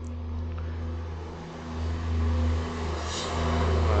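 Trucks passing by, a low, steady engine rumble that swells about two seconds in and builds again toward the end.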